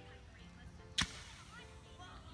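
A single sharp pop about halfway through, with a brief hiss after it: a pressurised water bottle rocket released from its launcher.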